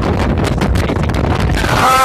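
Strong, gusty wind buffeting the microphone: a loud, steady rumble of wind noise.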